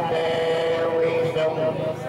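A man's voice chanting a drawn-out ceremonial recitation into a microphone, holding one long steady note for over a second, then moving to a higher note near the end.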